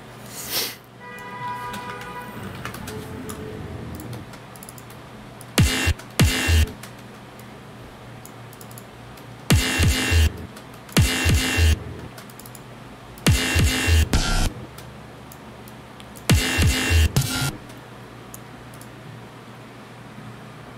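Chopped breakbeat drum samples played back in short bursts of about a second, each with a heavy kick and a few sharp hits, five times with pauses between, as a drum pattern is auditioned in the production software.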